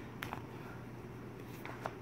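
Faint handling noise of yarn skeins being moved across a cloth-covered surface, with a few soft ticks, over a low steady hum.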